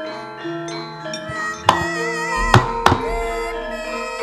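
Javanese gamelan accompaniment for a wayang kulit shadow-puppet play, with steady ringing metallophone and gong tones. Three sharp knocks about halfway through mark the puppet's movement on the screen, typical of the dalang's keprak and cempala strikes.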